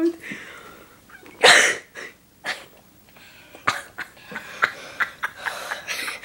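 A person's breath reacting to the burn of crushed chillies: one loud, explosive burst of breath about a second and a half in, then a string of short, sharp breaths and gasps.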